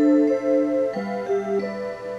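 Seiko QXM239S melody wall clock playing one of its hour melodies from its speaker: a tune of sustained electronic notes that steps to a lower note about a second in.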